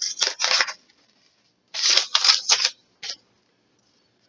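Paper being handled close by, in short dry rustling strokes: two at the start, a quick run of three about two seconds in, and one more just after.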